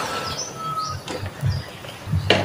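A few faint, brief bird chirps in the background, with a soft knock about a second and a half in.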